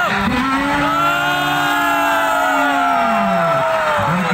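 A motor vehicle's engine passing by, its note holding for a few seconds and then sliding steeply down in pitch near the end as it moves away.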